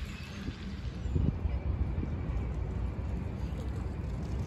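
A low, uneven outdoor rumble, with faint splashing from a pond fountain fading in the first moments.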